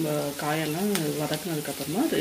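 Cubed onion and capsicum sizzling as they fry in hot oil in a wok, with a few light clicks from the wooden spatula. A voice-like pitched sound that rises and falls runs through it.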